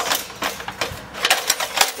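Werner LevelLok ladder leveler's spring-loaded leg clicking through its locking increments as its release is pushed with a boot: a quick run of sharp metal clicks, about six or seven in two seconds.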